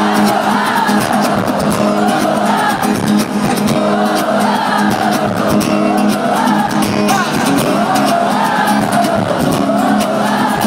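Live pop music in an arena, heard through a phone's microphone: a wordless sung vocal line rising and falling over a steady low note, with the crowd cheering.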